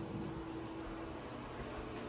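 Steady low room noise in a small bathroom, with a faint steady hum that fades out a little after a second in; no distinct event.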